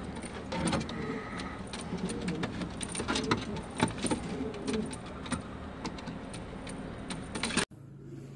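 Shami pigeons cooing, with many sharp clicks and scrapes mixed in. The sound drops away suddenly shortly before the end.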